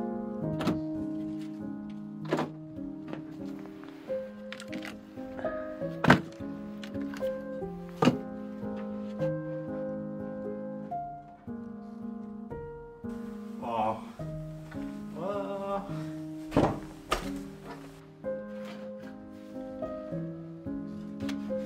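Background music with a melody of held notes, over several sharp wooden thunks of split firewood logs knocking together as they are loaded into a woven basket and handled, the loudest about six and eight seconds in and a pair near the end.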